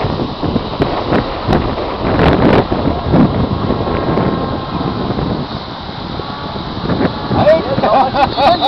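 Wind buffeting the camera's microphone: a loud, uneven rumble that rises and falls in gusts. A man's voice starts near the end.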